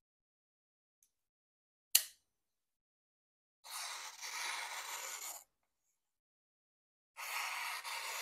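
A sharp click about two seconds in as the blade of a Null Knives Voodoo folder is flicked open and locks. Then the hollow-ground M390 blade slices through a sheet of paper twice, each cut lasting about a second and a half.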